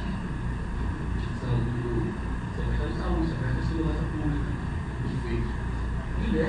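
Indistinct speech over a steady low hum.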